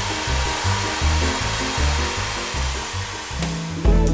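Electric drill with a paddle mixer running steadily, stirring thin-layer mortar in a bucket, fading out shortly before the end. Background music with a low bass line plays underneath.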